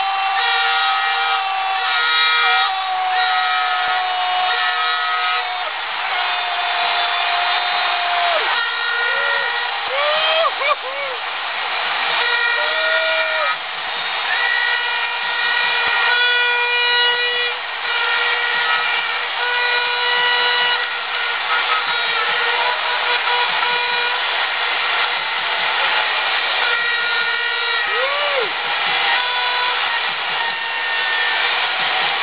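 Football stadium crowd noise with air horns blowing over it: several long held notes at once, a few of them bending briefly in pitch.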